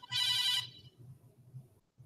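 A phone ringtone sounding once, briefly: a chord of steady high tones lasting about half a second.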